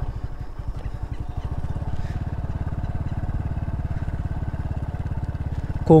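Small step-through motorcycle engine running steadily at low riding speed, a rapid even putter.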